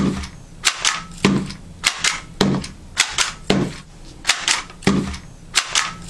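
Meto 2600-series handheld labeling gun being squeezed repeatedly, each stroke a sharp double clack of the trigger going in and springing back. About ten strokes at an even pace of just under two a second.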